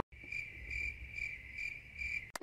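Cricket chirping sound effect, a faint steady trill pulsing about twice a second, used as the cartoon gag for an awkward silence after a line.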